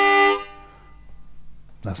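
A cheap harmonica blows a held chord that stops about half a second in. It is slightly out of tune: "not in tune but close enough".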